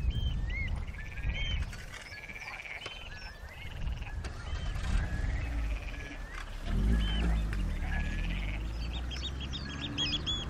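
Several wild birds calling with short whistled notes, and a fast run of repeated notes near the end, over a low rumble that swells about seven seconds in.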